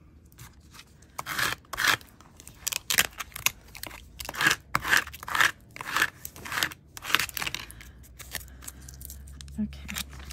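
Crinkled aluminium metal tape being rubbed flat onto a tag, a run of scratchy, crackling rustles for about seven seconds that eases off near the end.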